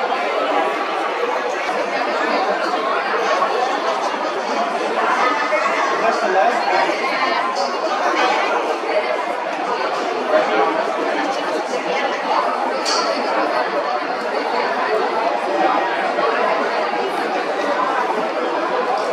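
Baseball stadium crowd chatter: many spectators talking at once in a steady murmur, with no single voice standing out.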